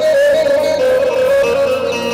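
Kurdish folk dance music in an instrumental passage: a wavering, ornamented lead melody played on an electronic arranger keyboard.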